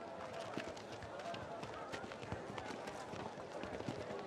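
Footsteps of several people walking on stone paving: many light, irregular steps, with a low murmur of crowd voices underneath.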